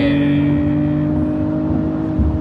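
BMW M340i's 3.0-litre inline-six engine running at high revs under way, heard from inside the cabin. Its steady note edges slightly up in pitch and then holds.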